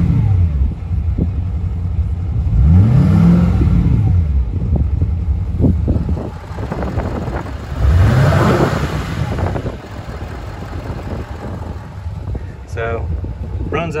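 Emissions-deleted 6.6 L Duramax V8 turbo diesel with a 5-inch exhaust, free-revved in three short blips from idle to about 2,800 rpm and back, idling between. Each blip rises and falls back within about a second and a half; the first is already dropping at the start.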